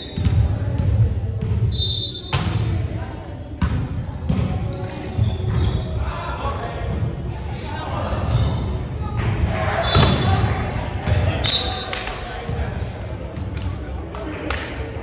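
Indoor volleyball play: a series of sharp ball hits and bounces on the court, with short high squeaks and players' voices calling, echoing in a large gym.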